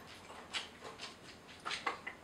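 Sipping and swallowing beer from a glass: a few faint, short clicks and mouth sounds, the clearest pair near the end.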